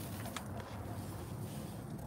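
Faint steady outdoor background noise, a low rumble with hiss, and a few soft clicks.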